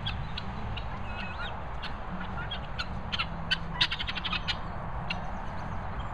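Helmeted guineafowl calling: scattered short, harsh clicking notes that quicken into a rapid run about four seconds in.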